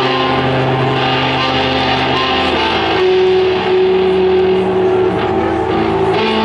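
Electric guitar played live through stage amplifiers, held notes that ring out long, moving to a new set of notes about halfway through.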